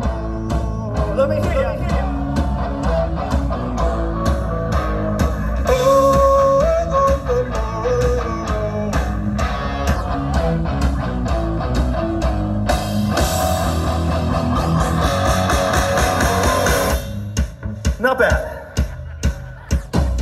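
Live rock band playing loud with electric guitars, bass and drum kit, a high 'oh, oh' singalong melody carrying over the top. A cymbal wash builds, then the full band stops about three seconds before the end.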